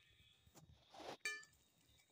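Near silence: room tone, broken about a second in by one brief faint noise.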